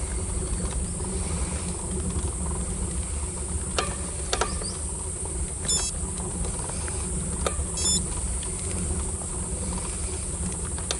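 Steady low rumble of a road bicycle rolling slowly uphill on asphalt, heard through the rider's action camera, with a few sharp clicks and two short runs of high ticks around the middle.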